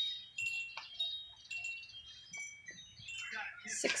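Wind chimes ringing softly: scattered high, clear tones overlapping and fading. Faint rustles and flicks of paper book pages being leafed through run under them.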